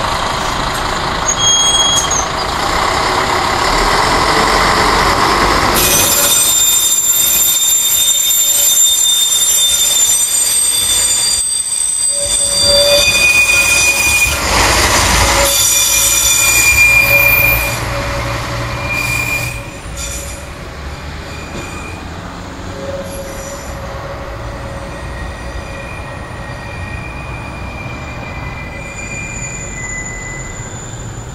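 Vogtlandbahn diesel railcars negotiating tight track curves: running rumble, then wheels squealing in several high steady tones for about ten seconds, before the sound drops away to fainter squeals from a train further off.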